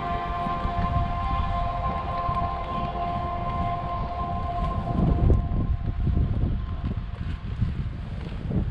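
Several steady held tones sounding together, fading away about four to five seconds in. After that, wind rumbles and gusts on the microphone, loudest a little past the middle.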